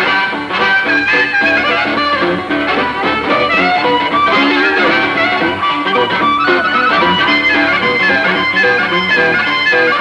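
Live blues played on harmonica and guitar, the harmonica played into a handheld microphone with bending, wailing notes over the guitar accompaniment.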